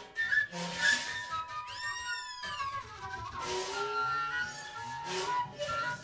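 Free-improvised live music: flute holding long wavering notes over cymbal strikes, with a high swooping whistle-like glide about two seconds in.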